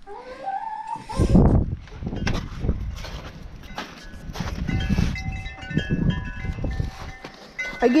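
A flock of chickens clucking and calling, with many short, high calls overlapping from about two seconds in, over a continuous low noise.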